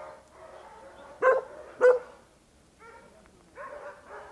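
Dogs barking: two loud barks about half a second apart a little over a second in, then fainter barking later on.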